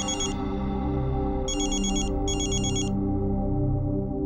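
Mobile phone ringing with an electronic trilling ringtone, in short bursts: one at the very start, then two more about a second and a half and two and a half seconds in. Steady background music plays underneath.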